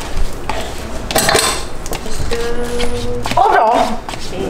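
Disposable food containers clattering and rustling as they are handled and emptied into a plastic bag, with a startled woman's voice near the end.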